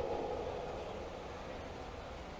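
Steady, low background noise with no distinct events.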